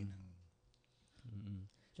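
A man's speech trails off, then a short pause with a few faint clicks and a brief low murmur of voice.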